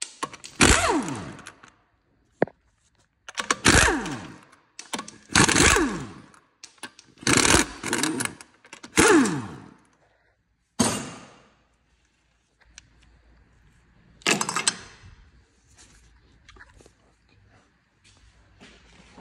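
Impact wrench undoing the wheel bolts on a BMW F30's front wheel, in about seven short bursts that each fall in pitch as the tool winds down. The last burst comes a few seconds after the others, near the end.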